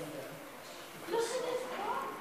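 Indistinct speech: a voice talking quietly in the background, with no clear words.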